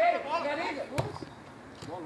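A man's voice trailing off just at the start, then a single sharp knock about a second in over quieter open-air background noise.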